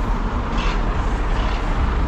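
Cars passing close by on the road over the steady low rumble of idling truck engines, with tyre noise heaviest near the end.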